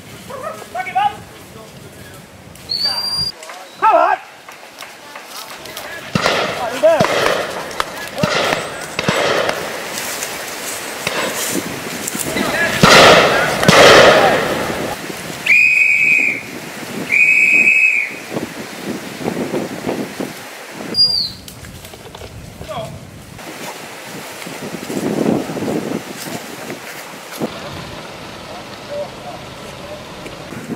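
A whistle blown twice, two long blasts on one steady pitch about a second and a half apart, with men's voices around them.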